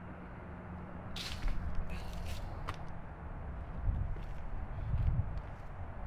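Outdoor ambience: a low, uneven rumble with a few short rustles and clicks, the first about a second in.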